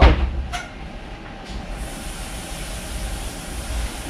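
Steady hiss of cooling fans from a freshly powered-up desktop PC and its power inverter, with a low rumble underneath; a brighter, higher hiss joins just before halfway and stays. A single short click about half a second in.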